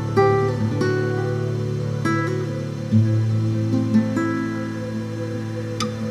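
Instrumental music led by acoustic guitar: single plucked notes ringing out every second or so over sustained low notes, with no singing.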